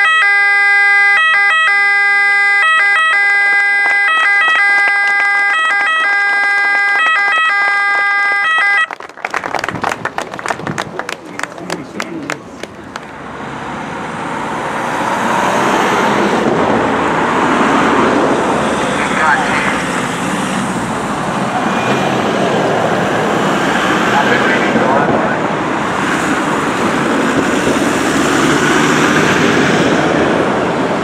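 Electronic emergency-vehicle siren of a Toyota Hilux forest-fire pickup sounding in stepping, alternating tones, which cuts off abruptly about nine seconds in. After a few clicks, a convoy of pickup trucks drives past with steady engine and tyre noise that builds and then holds.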